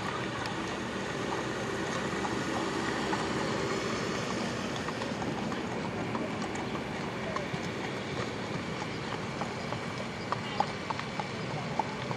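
Hoofbeats of a show jumper cantering on sand arena footing over a steady background hum of the show ground, with sharper hoof strikes standing out in the second half.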